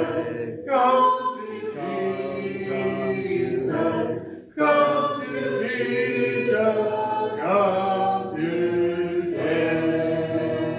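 A congregation singing a hymn a cappella, with no instruments, in held phrases and a short breath break about four and a half seconds in.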